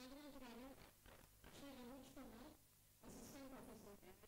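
Near silence with a faint voice speaking in three short phrases.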